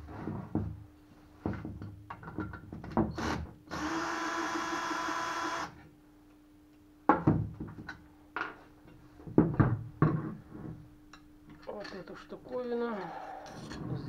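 Cordless drill with a long socket extension spinning for about two seconds, backing out a bolt from a Tohatsu 9.8 outboard's gearcase. Sharp clicks and knocks of the metal bolts and parts being handled on a wooden table come before and after it.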